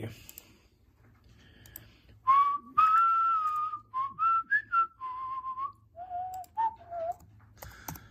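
A person whistling a short tune of about ten notes that step up and down, starting about two seconds in and ending about a second before the end.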